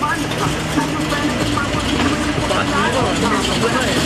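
Classic sedan's engine running with a low, steady rumble as the car rolls slowly past.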